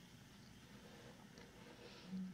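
Near silence: a faint, steady background hiss.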